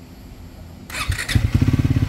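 Triumph Speed 400's single-cylinder engine starting: a brief crank about a second in, then it catches and settles into a steady idle with even pulses of about fifteen a second. The owner calls the crisp exhaust note normal.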